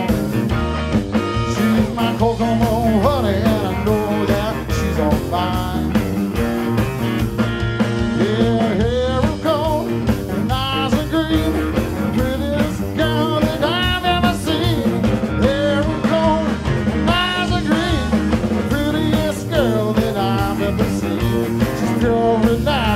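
Live blues-rock trio playing: a lead electric guitar with many bent notes over electric bass and a drum kit.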